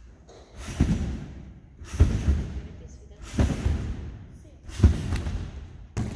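Gymnast bouncing on a large trampoline: four heavy thuds about a second and a half apart, each followed by a fading rush.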